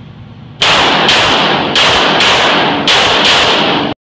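STI 2011 pistol in .40 S&W firing about six shots in quick succession, roughly half a second apart, each shot echoing heavily off the concrete walls of an indoor range bay. The sound cuts off suddenly just before the end.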